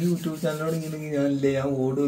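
A man's voice holding a long, steady low note, with a couple of brief breaks.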